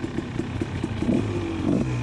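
Dirt bike engines idling steadily, with scattered light ticks and clatter.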